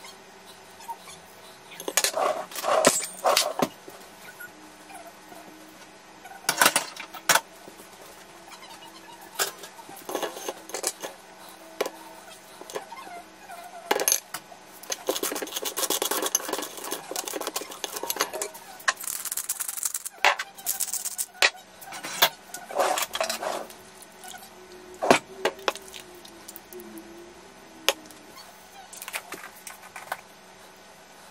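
Kitchen clatter from cutlery on a ceramic plate: scattered sharp clinks and knocks, with a longer stretch of a fork scraping and mashing avocado onto toast about halfway through. Near the end a slotted spoon knocks against a steel saucepan and the plate as a poached egg is lifted out.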